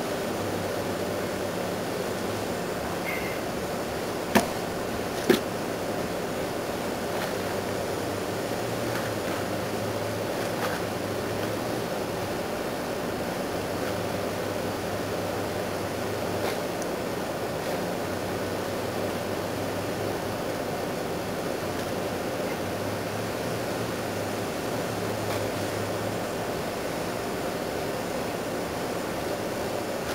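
A plastic potato grow pot being emptied of potting mix onto a plastic tarp by hand: two sharp knocks about a second apart a few seconds in, then faint scattered rustles and ticks, over a steady hiss and low hum.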